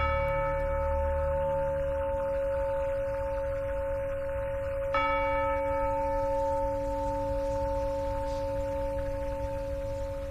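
Two deep bell tones in a film score, struck once at the start and again about five seconds in, each ringing on in a long, steady, slowly fading chord. A low rumble fades out over the first two seconds.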